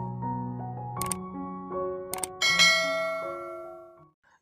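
Intro music of held keyboard notes, with two sharp clicks about one and two seconds in, then a bright bell chime that rings out and fades away. These are the click and bell sound effects of a subscribe-button animation.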